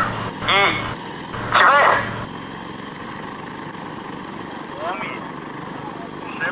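Electric propellers of the XPeng AeroHT X3 multirotor flying car running at lift-off and hover, a steady even noise with no clear pitch that takes over after about two seconds.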